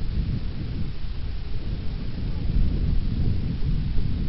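Wind buffeting and rubbing against a body-worn camera's microphone while the runner jogs, making a continuous, uneven low rumble.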